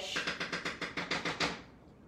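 A fast run of sharp clicks, about eight a second, that stops about a second and a half in.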